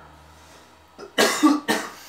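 A man coughing twice in quick succession, about a second in, after a moment of near-quiet.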